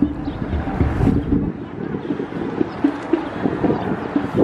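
Wind buffeting the microphone: a low, noisy rumble, heaviest in the first second and a half, then easing to a lighter rumble.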